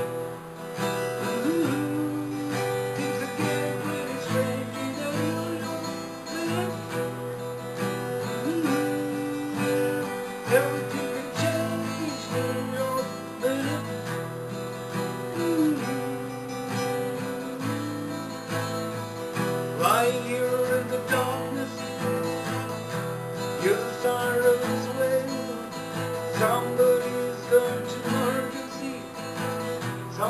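Acoustic guitar being played solo, a continuous run of strummed and picked chords and notes.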